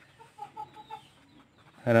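A bird calling faintly in the background: a quick run of about six short, even notes about half a second in.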